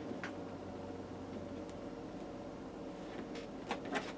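Faint handling sounds of kite string being wrapped and knotted around gathered cotton T-shirt fabric: light rustling with a few small clicks, about once near the start and a couple near the end, over a low steady hum.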